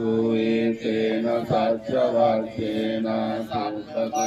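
Buddhist chanting in Pali: a male voice recites a sutta in long notes, each held on a steady pitch, with short breaks between phrases.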